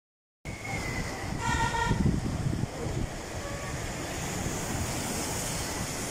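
Surf washing over a rocky shore, with wind rumbling on the microphone. About a second and a half in there is a short, flat horn-like toot.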